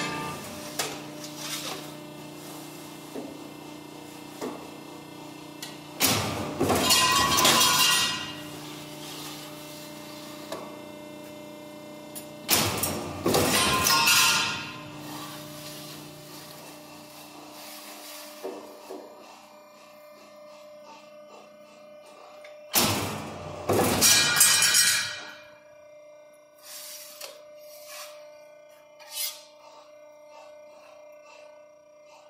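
Cincinnati Model 2500 CNC hydraulic power shear cycling three times. Each stroke is about two seconds of loud shearing noise as the blade comes down through the stock, over the machine's steady hydraulic hum.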